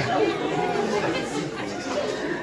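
Indistinct chatter: several voices talking low at the same time, with no single clear voice.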